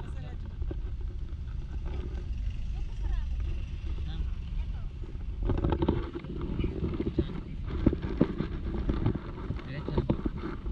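Street noise: a steady low rumble with people talking, growing louder and busier with short knocks about halfway through.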